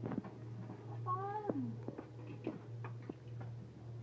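A cat meowing once about a second in, a single call that drops in pitch at the end.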